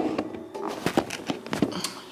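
A few light clicks and knocks of handling noise as the camera is picked up and repositioned.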